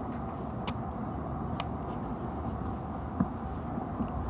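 Steady hum of city traffic, with a few faint clicks and one short low knock near the end.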